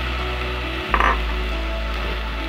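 Chopped tomato and onion refrito sizzling in a pot while being stirred with a wooden spoon, with a single clack of the spoon against the pot about a second in.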